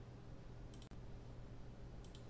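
Faint computer mouse clicks, two or three close together a little under a second in, over a steady low hum.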